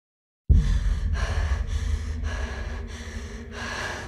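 A woman's quick, heavy breathing, about one breath every half second, over a low steady rumble. It begins after half a second of silence.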